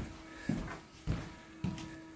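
Footsteps on a wooden plank floor: dull thuds about every half second, three steps in all.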